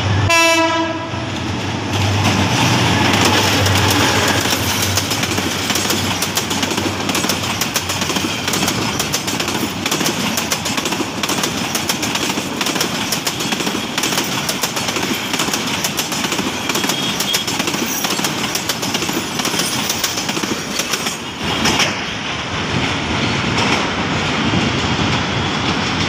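Diesel locomotive's horn ending about a second in, then the locomotive's low engine drone and a long, loud, steady clatter of coach wheels over the rail joints as a passenger train passes close by.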